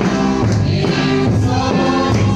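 Gospel music: group singing over a steady beat of about two strokes a second.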